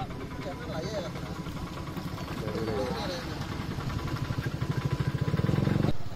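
A small engine running close by with a steady low pulse, growing louder toward the end and cutting off suddenly. Faint voices call out over it.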